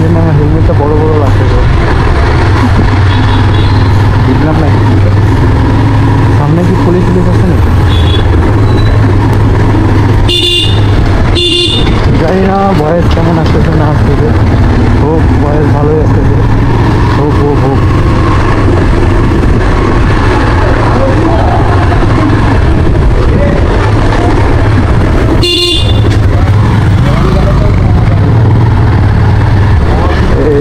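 A motorcycle riding slowly through town streets: a steady low rumble of engine and wind on the camera's microphone throughout. Brief vehicle horn toots come about ten to twelve seconds in and again about twenty-five seconds in.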